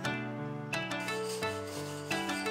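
Hacksaw cutting a thin strip of light wood, rasping back-and-forth strokes, heard under background music.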